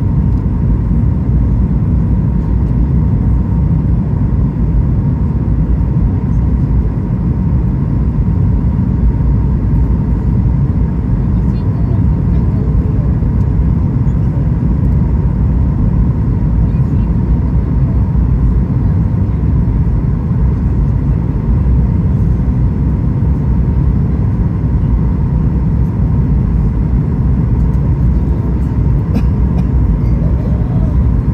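Steady, loud low noise of an airliner's engines and airflow as heard inside the cabin on descent, with a thin steady whine above it.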